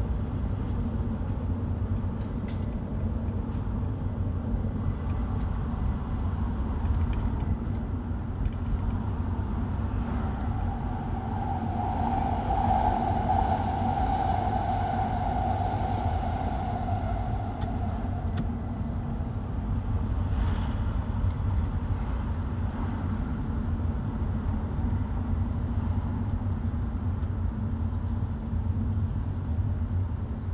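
Road and engine noise heard from inside a moving car: a steady low rumble. A mid-pitched hum swells and fades again around the middle.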